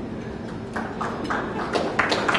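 Audience applause beginning: a few scattered hand claps start under a second in and quickly multiply, building toward full applause near the end.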